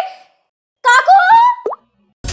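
Comic sound effects: a short, high-pitched, voice-like warble that slides upward, followed by a quick rising plop.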